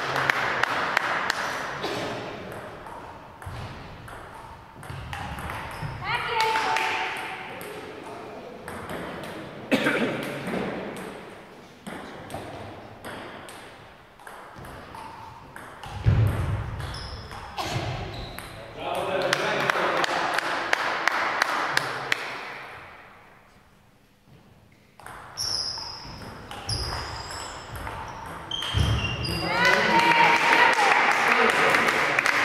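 Table tennis rallies: the plastic ball clicking off the bats and the table in quick trains, in several rallies with short pauses between points. The hall is echoing.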